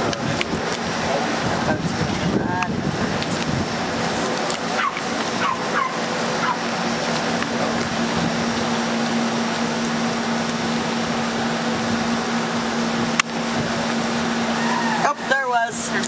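Steady rushing outdoor noise with a low steady hum beneath it, as from wind and a running motor, while faint voices come and go in the background; clear talk begins near the end.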